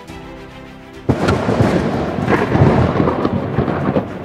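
Thunder sound effect: a sudden loud crash about a second in that goes on for nearly three seconds, over theme music with held notes.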